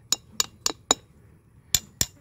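A steel trowel blade striking a concrete block: four quick sharp clinks, about four a second, then a pause and one more near the end. This tapping is a test of the block's soundness; the ringing taps come from a block that is still fairly solid.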